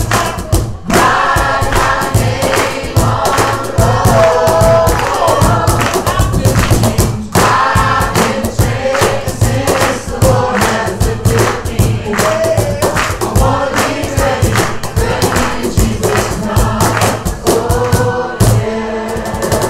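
A congregation singing a worship song together with a live band, group voices over a steady strummed and percussive beat.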